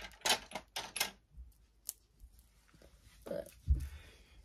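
Small skincare bottles and jars clicking against each other and the shelf as they are picked up, a quick run of sharp clicks in the first second and one more about two seconds in. A duller knock near the end.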